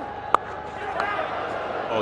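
Cricket bat striking the ball once, a sharp crack off the leading edge, about a third of a second in. A steady stadium crowd murmur runs underneath.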